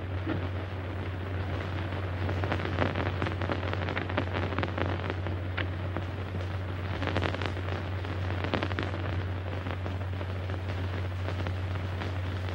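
Background noise of an old optical film soundtrack: a steady low hum under hiss and scattered crackle, with no distinct sound event.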